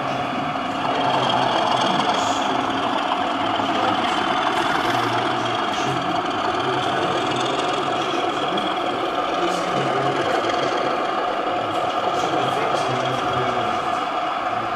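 OO gauge model diesel locomotive and coach running along the layout, with a steady engine-like hum that gets a little louder about a second in, over the murmur of voices in the hall.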